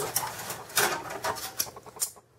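Thin metal expansion-slot blank-off plates in a Dell OptiPlex GX270 case being pushed and slid out of their slots by hand: a few light, irregular metal scrapes and clicks.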